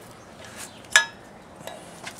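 A single sharp metallic clink about a second in, with a fainter click later, as the barrel-type hitch lock and the steel receiver hitch are handled.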